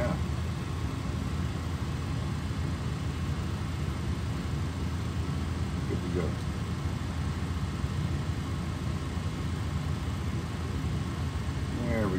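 Steady low mechanical hum of a running motor, unchanging throughout. A brief faint voice is heard about six seconds in.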